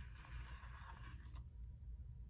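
A paper planner sticker being peeled off its backing sheet: a faint scratchy rasp, then a light tick about a second and a half in.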